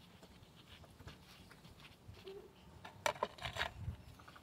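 Faint rustling and crackling of moss being pressed by hand onto the soil of a bonsai pot, with a short cluster of louder crackles near the end.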